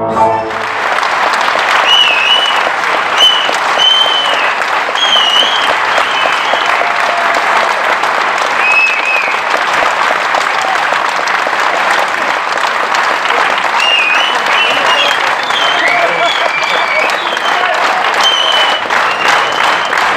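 Concert audience applauding steadily after a song, with scattered high whistles and cheers; the song's last held chord cuts off right at the start.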